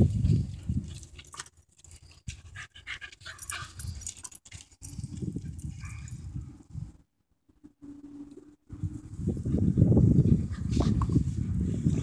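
Small shaggy terrier panting after running to fetch a ball, loudest and quickest in the last few seconds as it comes up close.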